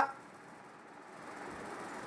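A pause in speech: only faint, steady background noise of the recording room.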